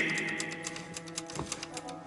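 Faint, rapid, irregular clicking over quiet sustained background music, with the echo of a voice fading at the start.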